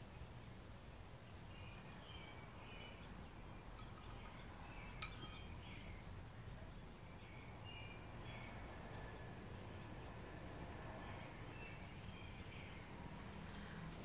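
Faint background of small birds chirping in short, scattered calls over a low steady rumble, with one sharp click about five seconds in.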